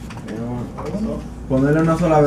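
Speech only: voices talking in a room, with a drawn-out "mm-hmm" near the end.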